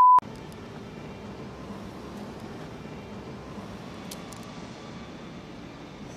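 A brief, loud 1 kHz test-card beep, cut off after a fraction of a second, then a steady faint rumble of city traffic ambience.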